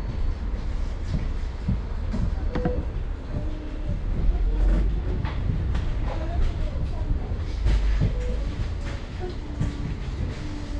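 Interior of a double-decker bus standing at a stop: a steady low engine rumble that swells a little in the middle and again near the end, with scattered rattles and knocks from the bodywork.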